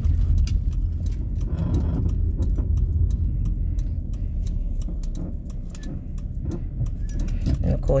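Steady low road and engine rumble inside a moving Chrysler sedan's cabin, easing a little around the middle as the car slows, with the bunch of keys hanging from the ignition jangling in light clicks throughout.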